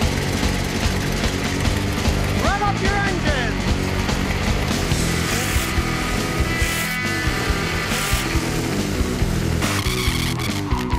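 Music with a steady beat laid over a Chevrolet Corvette Stingray's V8 engine revving through a burnout, its rear tyres spinning.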